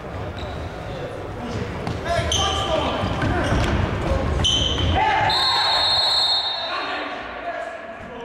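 Futsal match on a wooden hall floor: players shout, and the ball thuds on the boards. About five seconds in comes one long, high referee's whistle blast after a challenge, the signal for a foul, with shorter high peeps a little before it.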